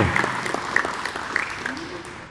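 Audience applauding, the clapping fading away over about two seconds.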